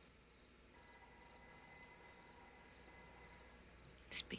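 Near silence: faint room tone, with a few thin, steady high tones coming in about a second in and fading near the end.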